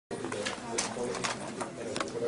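Indistinct murmuring voices in a room, with several sharp clicks and knocks scattered through.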